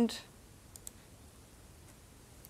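Two faint computer mouse clicks, close together a little under a second in, as a new folder is created in a file window.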